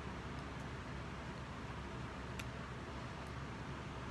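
Quiet steady background hum and hiss, with three faint small ticks.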